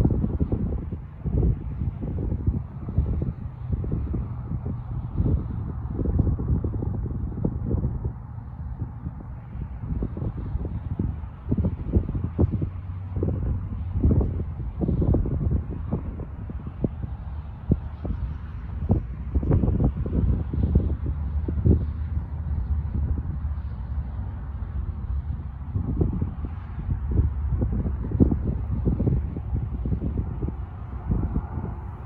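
Wind buffeting the microphone: a low, gusty rush that comes and goes in uneven blasts.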